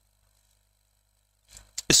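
Near silence with a faint low hum, then a man's voice begins speaking near the end.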